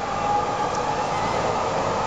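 A steady mechanical drone with a faint held whine running through it.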